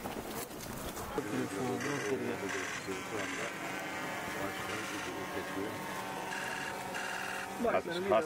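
Indistinct voices of a group of people talking in the background, with no clear words.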